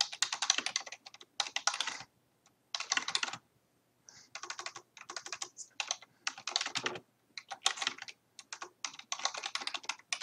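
Fast typing on a computer keyboard: quick runs of keystroke clicks in bursts of a second or two, broken by short pauses.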